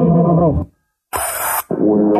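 Necrophonic ghost-box app playing through a speaker: two short, garbled voice-like fragments separated by a brief burst of hiss. The user takes these chopped voices for a spirit speaking to her, and she hears them as a foreign language.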